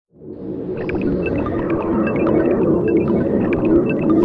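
Channel-intro sound design: a low, rumbling electronic drone fades in, dotted with many short high-pitched beeps and blips.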